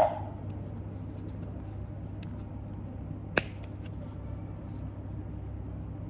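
A single sharp click about three and a half seconds in as the press-stud snap on a suede jewellery pouch is pulled open, with a few faint handling ticks over a low steady hum.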